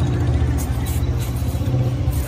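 Wind buffeting the phone's microphone on an open rooftop: a steady, loud low rumble.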